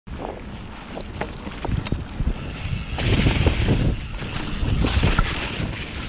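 Mountain bike rolling over a leaf-covered dirt trail: tyre noise on the ground and leaves, with sharp clicks and rattles from the bike and wind rumbling on the camera microphone. The noise grows louder a few seconds in.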